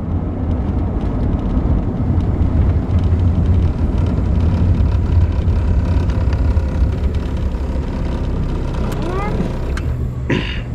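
1965 Ford Mustang convertible on the move with the top down, heard from the cabin: a steady low engine and road rumble mixed with wind noise, growing louder in the middle of the stretch and easing off towards the end.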